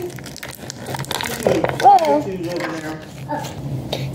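Thin clear plastic packaging crinkling and crackling as it is squeezed and flexed to pop a miniature toy out, a quick run of small clicks over the first second and a half, with a few more after.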